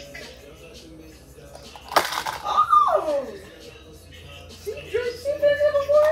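A woman's wordless vocal sounds over background music: a falling groan shortly after a sharp knock about two seconds in, then a held hum that drops off near the end.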